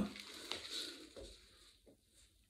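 Faint rustling and shuffling of a person getting up from a crouch and moving across a hard floor, with a light click about half a second in.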